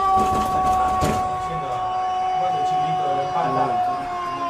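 One long, steady, horn-like tone, falling slightly in pitch as it is held, with quieter voices underneath.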